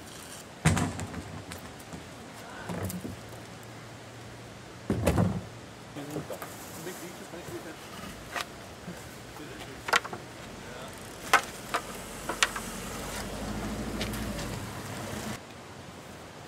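Gear being handled at a car: a couple of dull knocks as a kayak goes onto the roof rack and gear is packed, then a run of sharp clicks and rustles. A low rumble builds in the last few seconds.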